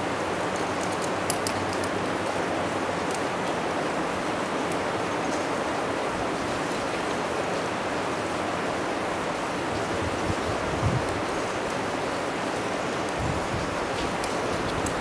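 A steady rushing noise with no change in level, with a few faint light clicks in the first half.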